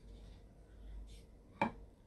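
A person sipping beer from a glass, quiet except for one sharp click about one and a half seconds in.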